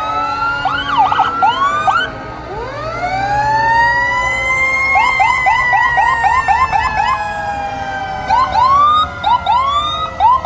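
Several fire truck sirens sounding together: a slow wail that climbs for a couple of seconds and then slowly falls, overlaid with quick yelping chirps about five a second in the middle, and a few separate whoops near the end.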